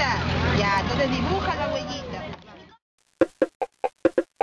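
Children's and adults' voices talking over one another, with a steady low hum underneath, cut off abruptly a little under three seconds in. After a brief silence, sharp percussive beats of music begin, about four a second.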